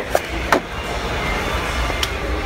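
Background music over steady store hum, with a few sharp clicks of plastic action-figure blister packaging being handled within the first second.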